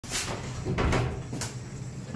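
Interior door being opened, with a few knocks and a sharp click about a second and a half in.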